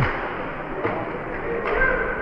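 Ice hockey play in a rink: a few sharp knocks, under a second apart, over the steady background hum of the arena.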